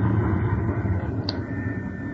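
Radio-drama sound effect of a small, fast car under way: a steady low mechanical hum and rumble.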